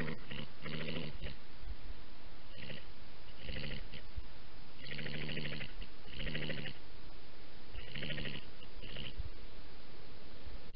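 European badger giving short, rapidly pulsed calls, about eight bursts over ten seconds, each under a second long.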